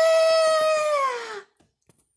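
A child's voice holding one long, high-pitched shout, steady in pitch and then falling away as it ends about a second and a half in.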